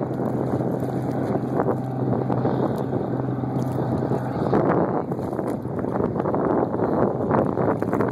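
Wind buffeting the microphone over choppy water, with a steady low engine hum that stops about halfway through.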